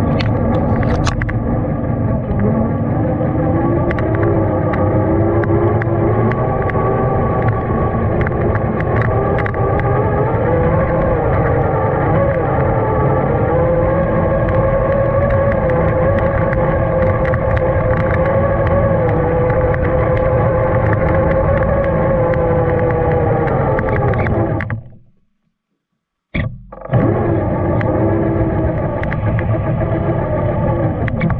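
Traxxas TRX-4 RC crawler's electric motor and gearbox whining steadily, the pitch wavering and rising slightly as the throttle changes, with light ticks of snow and twigs against the body. About 25 seconds in the sound cuts out completely for about a second, then the whine resumes.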